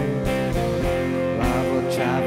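Rock band playing live: sustained electric guitar chords over bass and drums, with a cymbal hit near the end.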